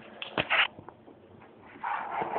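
A few short rustles of a sheet of poster board being rolled up tightly by hand, clustered about half a second in, followed by quieter handling.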